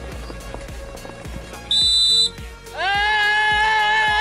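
Background music with a light beat, cut through about two seconds in by one short, shrill blast of a referee's whistle signalling the pigeon release. Less than a second later a long, loud, steady pitched call starts and holds to the end.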